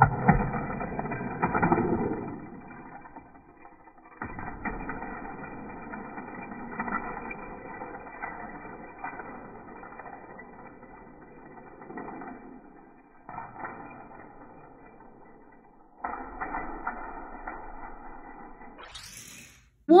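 Hot Wheels die-cast toy car rolling and rattling down plastic track, loudest as it launches. The sound is muffled, with no high end, and breaks off abruptly several times where the footage cuts.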